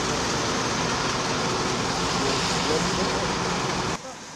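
Steady, loud roadside noise at a night-time crash scene on a wet highway, a hiss with no clear single source, with faint voices in the background. It cuts off abruptly near the end.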